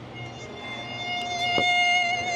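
A single held, string-like musical tone from a museum exhibit's audio playback, started by a push button. It sets in just after the start and swells steadily louder.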